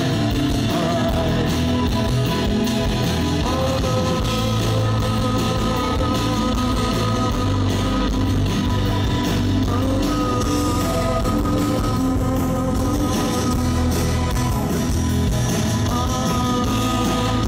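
Live rock band playing through a PA: strummed acoustic guitar, drums and long held notes, with a male voice singing.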